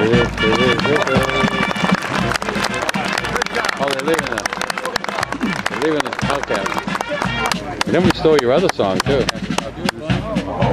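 Band music with many voices singing and shouting over it, and a dense patter of sharp clicks. Held chords stand out in the first couple of seconds; wavering voices are strongest near the end.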